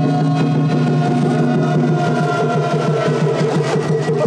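Festival float music with rapid, even drumming and steady held notes, running continuously at a loud level.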